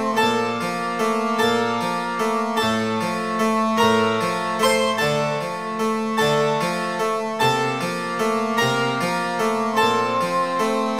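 Contemporary ensemble music with prepared piano: a steady stream of short keyboard notes over held tones.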